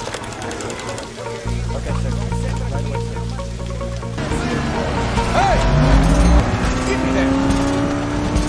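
Film soundtrack playing: music and dialogue, then a race car engine whose pitch rises steadily through the second half, with a deep rumble loudest near the middle.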